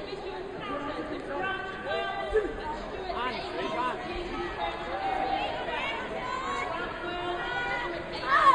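Chatter of many overlapping voices in a large sports hall, with a brief low thump about two and a half seconds in.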